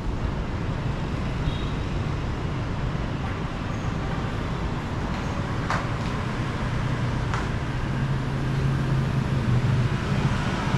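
Steady rumble of street traffic, with a low engine hum that grows louder over the last couple of seconds and a couple of faint clicks in between.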